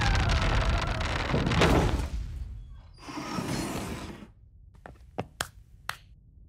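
Heavy round metal vault door grinding and scraping shut with a slowly falling screech, a second shorter rumble about three seconds in, then four sharp clicks as its bolts lock near the end. A cartoon sound effect.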